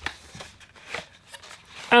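Cardboard packaging sliding and rustling faintly as a plastic tray holding a mini photo printer is pulled out of its box, with a few light taps.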